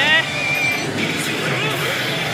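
Steady din of a pachislot parlour: machine sound effects and background music blending into a constant noise, with a brief high electronic tone about half a second in.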